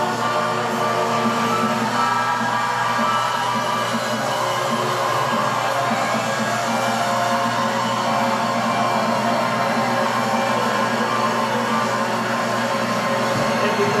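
Instrumental music on an electronic keyboard, with no singing, playing steadily throughout.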